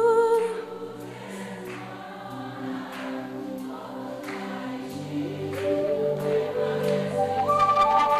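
Live worship band music: a held sung note ends just after the start, then soft sustained chords with light, regular ticks carry on. A low bass note enters about five seconds in, and the sound swells louder near the end as the chord rises, with several voices singing together.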